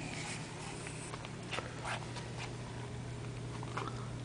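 Faint steady low hum of room or equipment noise, with a few soft clicks and rustles scattered through.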